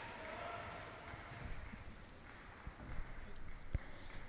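Quiet room tone of a large ice arena, with faint distant voices and a single click near the end.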